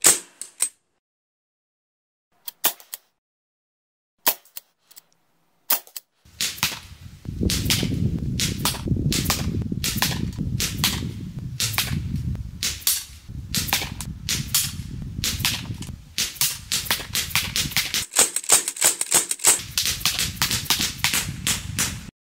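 Sig Sauer MPX .177 semi-automatic pellet rifle running on high-pressure air, firing sharp shots. A few spaced single shots come first, then fast rapid fire from about six seconds in, with a steady low rumble underneath.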